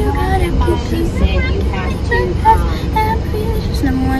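A girl's voice in short phrases over the steady low rumble of a car driving, heard from inside the cabin.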